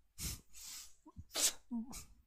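A man sneezing: two short noisy bursts of breath, the first just after the start and a sharper one about a second and a half in.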